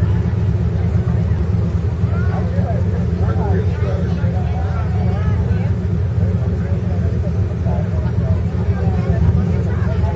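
Pickup truck engine idling with a low, steady rumble, under the chatter of a crowd of spectators.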